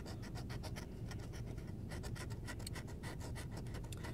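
Scratching the coating off a Mass Lottery $5 Jumbo Bucks scratch-off ticket in quick, repeated short strokes, with a brief pause about two seconds in.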